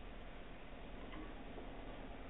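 Pause in a recorded talk: faint, steady background hiss with a low hum, and one soft click about a second in.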